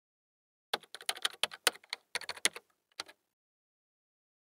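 Typing sound effect: a quick, uneven run of sharp key clicks that starts just under a second in and stops just after three seconds.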